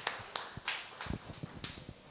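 Scattered hand claps, about two or three a second, growing fainter toward the end.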